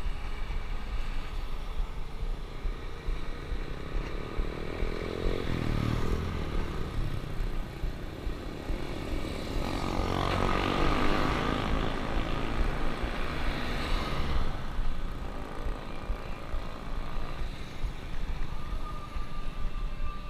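Wind and road rumble on a bicycle-mounted action camera while riding. Motor vehicles pass close by: a brief one about five seconds in with a falling pitch, and a louder one from about ten to fourteen seconds in.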